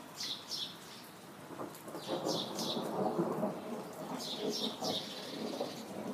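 Rolling thunder rumbling, swelling about two seconds in and staying loud. A bird sings over it, repeating a short high chirp in pairs every couple of seconds.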